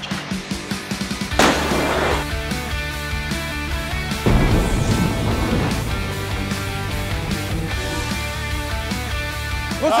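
Background music, with two heavy crashes of a car dropped by a crane slamming onto the ground: one about a second and a half in, and a longer one about four seconds in that dies away over a couple of seconds.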